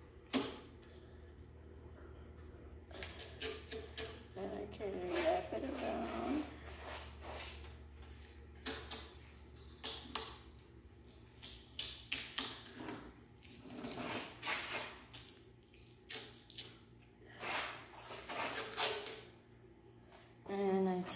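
Duct tape being pulled off the roll and wrapped around a push mower's handle, in many short ripping pulls with handling noise in between.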